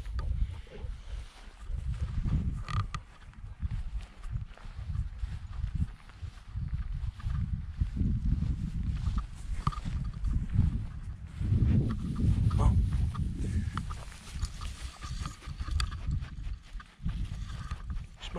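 Dogs (a chocolate Labrador and a springer spaniel) sniffing and rustling through long grass close to the microphone, over a low, uneven rumble.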